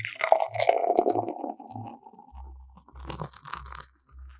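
Intro sound effects: a run of low thumps about every half second with a crunchy, fizzing texture over them, then deep bass pulses in the second half.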